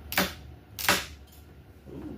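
Roller chain of a chain-style geode cracker clicking sharply twice, about a second apart, as the handle is squeezed and the chain slips on the geode's rind without cracking it.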